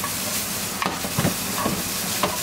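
Ground pork with canned peas and carrots sizzling in a nonstick frying pan while a wooden spatula stirs them, with a few scraping strokes about a second in.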